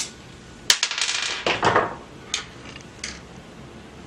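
Small metal hotend parts and pliers clinking: a sharp clink a little under a second in runs into a quick rattle of metallic clicks, followed by two single clicks.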